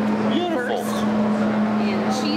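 People talking at a table, the words indistinct, over a constant steady humming tone.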